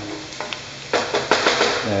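Chopped onions and garlic sizzling in hot ghee in a non-stick frying pan, with a wooden spatula stirring and scraping them; a few quick scraping strokes about a second in.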